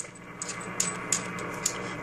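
Static hiss from an amateur radio receiver's speaker, tuned to an empty frequency with the RF gain turned all the way up, with a few faint clicks. The static keeps going with the coax shield connected, the sign that the feedline and antenna are not shorted.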